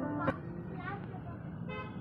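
Background music ends about a quarter second in. Busy street ambience follows: traffic noise, faint voices, and a short vehicle horn toot near the end.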